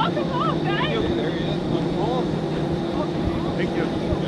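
A parked jet airliner running, a steady hum with a high whine held over it, with short snatches of voices on top.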